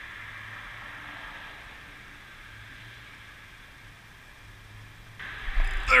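Faint steady outdoor noise, much like distant traffic. About five seconds in, a sudden louder rush of noise with a low rumble starts as a striped bass takes the swimbait and the rod loads up.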